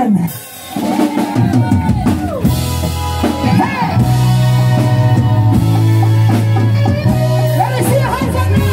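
Live reggae band starting a song: the drum kit comes in about a second in with snare and rimshot hits, and from about four seconds a steady, loud bass line runs under the drums, keys and guitar.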